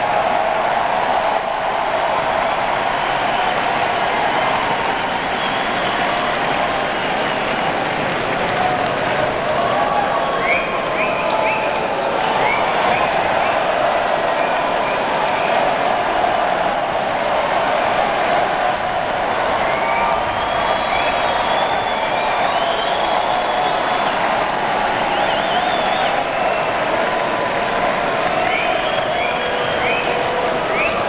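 Large arena basketball crowd: a steady, loud din of cheering, clapping and many voices. Short high chirps cut through about ten seconds in and again near the end.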